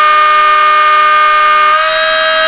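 Two brushless electric skateboard motors spinning unloaded at very high speed, driven by a FOCBOX Unity controller off a 14S battery in a max eRPM test. They make a loud, steady, siren-like whine of several pitches. Near the end, one lower tone drops out and the main pitch steps up slightly as the speed climbs past 110,000 eRPM toward 115,000.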